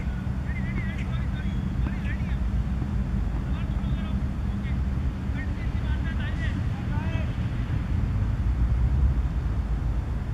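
Steady low machine-like hum, with faint distant voices calling now and then over it.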